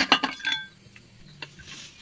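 Steel gearbox parts of a three-wheeler auto-rickshaw engine clinking and ringing against each other and the casing as a geared shaft is worked out of the opened crankcase: a quick run of metallic clinks in the first half-second, then a single click about a second and a half in.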